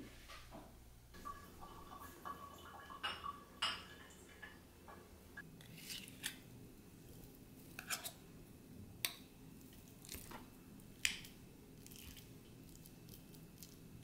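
Small metal tin and utensil clinking as wet cat food is scraped out onto a china plate, then a fork tapping and scraping on the plate as it mashes the food. Faint, scattered strokes, with a quick run of ringing clinks a few seconds in and single taps about once a second after that.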